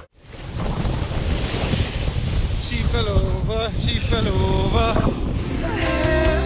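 Wind rushing over a helmet-mounted action camera's microphone during a fast downhill ski run, with ski hiss over the snow and a low buffeting rumble. A person's voice calls out in the middle.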